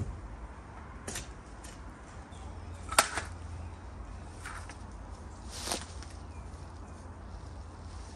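Spades working in stony garden soil: a few short sharp knocks and scrapes, the loudest about three seconds in, over a low steady rumble.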